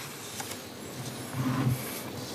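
Sheets of paper rustling and sliding as notes are handled at a desk microphone.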